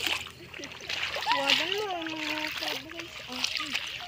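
Shallow seawater splashing and sloshing under wading footsteps over a seagrass bed, with a voice calling out in the middle.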